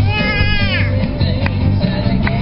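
A baby's high-pitched vocal sound, sliding up and then down, in the first second, sung along over a rock song with guitar playing on the car stereo.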